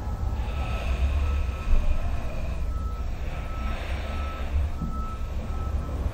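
Low steady rumble, like a vehicle engine running, with a faint high beep repeating at an even pace, in the manner of a reversing alarm.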